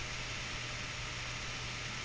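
Steady background hiss with a low electrical-sounding hum: room tone picked up by the recording microphone during a pause in speech.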